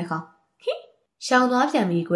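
Speech: a narrator reading a story aloud in Burmese, with a short pause and a brief vocal sound near the middle.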